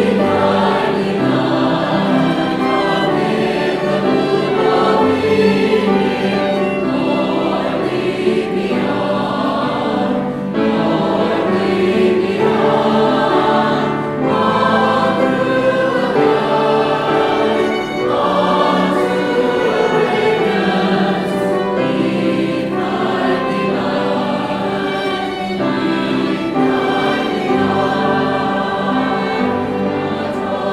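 A mixed choir of men's and women's voices singing in sustained chords, with no break.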